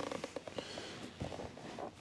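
A few faint plastic knocks and rubbing as a two-up passenger seat is pushed and shifted into its mount on an ATV's rear rack, not yet dropping onto its latch.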